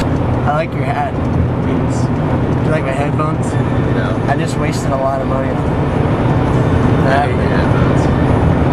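Steady engine and road drone inside a moving car, with indistinct voices talking now and then over it.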